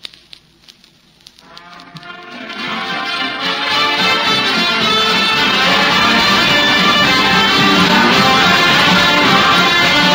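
A small home band playing a tune, fading up from near silence over the first few seconds and then playing steadily at full level, with a horn among the instruments.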